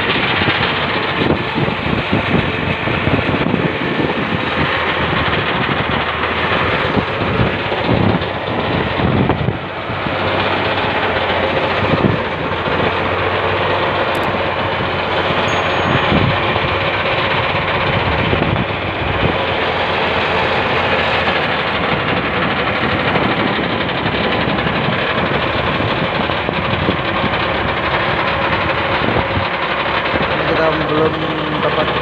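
Fishing boat's open inboard engine running steadily under way, mixed with the rush of wind and water spray against the hull.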